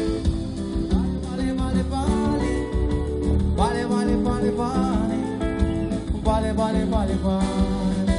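Live band playing upbeat Brazilian dance music, with guitar, bass and drums.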